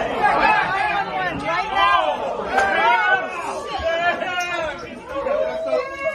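Several people's voices talking over one another in a heated argument.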